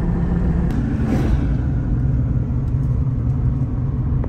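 Steady low road and engine rumble heard inside a moving car's cabin, with a brief swell about a second in.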